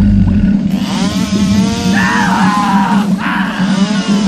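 Chainsaw sound effect: the engine runs with a steady low chug, then revs from about a second in, adding a hiss and a whine that rises and falls.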